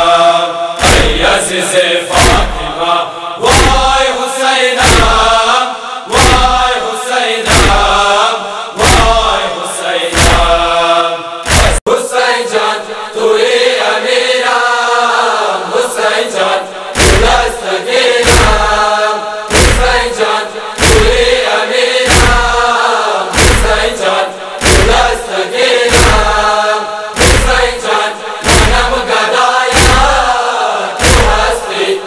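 A noha, a Shia lament, chanted by voices over a steady heavy thumping beat, a little more than one thump a second. The beat drops out for a few seconds about twelve seconds in, while the chanting carries on, then resumes.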